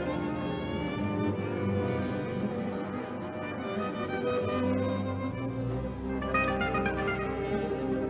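Live gypsy-jazz string ensemble: two violins carry the melody over a row of strummed acoustic guitars. Deeper bass notes join after about five seconds.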